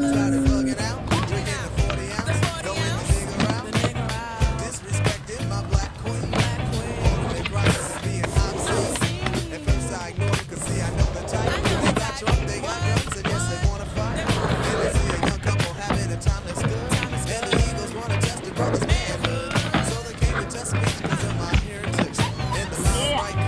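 Skateboard wheels rolling on concrete, with repeated sharp clacks of board impacts and landings, under background music with a steady beat.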